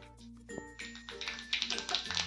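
Background music, with cumin seeds sizzling and crackling in hot oil in a kadhai from about half a second in.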